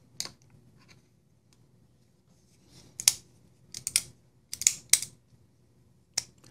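Civivi Vision FG folding knife being worked by hand, its Superlock and blade clicking as the lock is tested after PTFE powder has been brushed in. One sharp click about three seconds in, then two quick clusters of clicks over the next two seconds; the lock is still sticking.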